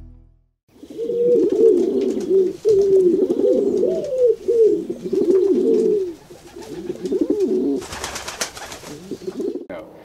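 Several pigeons cooing, overlapping rolling coos, with a brief rush of noise about eight seconds in.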